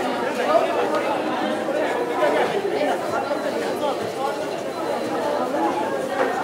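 Grocery store ambience: many voices chattering at once, overlapping into a steady murmur of conversation.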